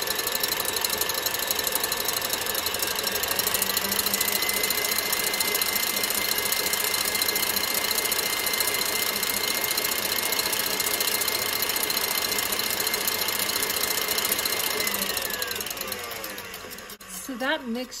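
KitchenAid ProLine stand mixer running with its wire whip beating egg whites into meringue foam: a steady whir with a thin motor whine. The whine rises slightly a few seconds in, then slides down and the sound winds down near the end as the mixer is switched off.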